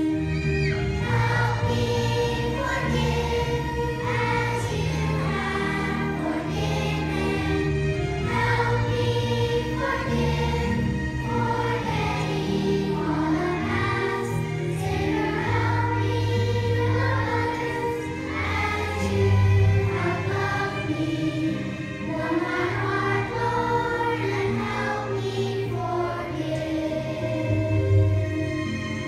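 A children's choir singing a song.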